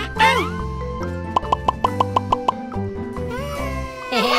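Cheerful children's background music, with a short gliding cartoon squeal just after the start. Then comes a quick even run of about eight pitched plop sound effects, timed to blueberries popping onto the top of a play-doh cake.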